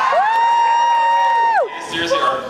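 One long, high-pitched cheering whoop from an audience member: a held 'woo' that glides up, holds steady for over a second, then drops away.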